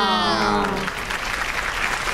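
Studio audience applauding, beginning about half a second in as a drawn-out voice trails off.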